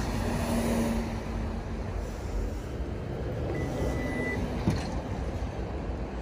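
Steady outdoor traffic rumble with wind noise. A short high beep comes about three and a half seconds in, and a single click about a second later.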